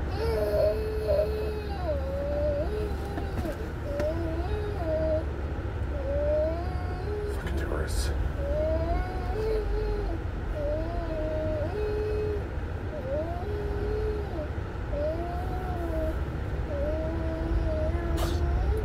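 A baby whimpering and fussing in short, gliding, sing-song cries, about one a second, over the steady low road rumble inside a moving car.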